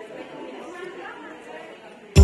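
Indistinct chatter of several people talking at a low level in the background, with no words coming through clearly.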